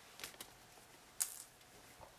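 Scissors snipping off a yarn end: a couple of faint clicks, then one short, crisp snip about a second in.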